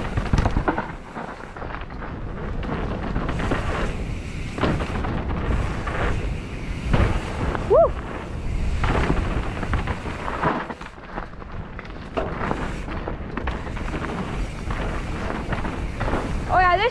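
Mountain bike descending a dirt singletrack at speed: wind buffeting the helmet-camera microphone, with tyres rumbling over dirt and the bike rattling and knocking over bumps. A short rising squeak sounds about eight seconds in.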